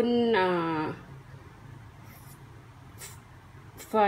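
A woman's voice holding out one word for about a second, then a pause of low background hum with a couple of faint, brief rustles before she speaks again.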